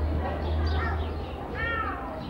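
A young goat bleating once near the end, a cry that rises and falls in pitch, with short high bird chirps around it.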